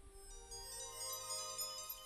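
A faint electronic tune of clear, steady tones, one note following another.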